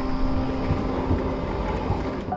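Commuter train running past a station platform: a steady, noisy rushing rumble, with soft held music notes underneath.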